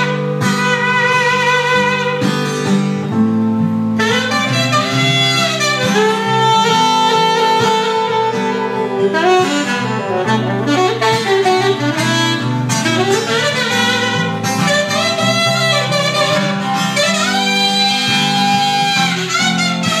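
Saxophone playing a melodic solo, with vibrato on held notes and pitch bends between them, over guitar accompaniment.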